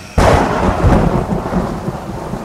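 A thunderclap: a sudden sharp crack a moment in, followed by a heavy low rumble.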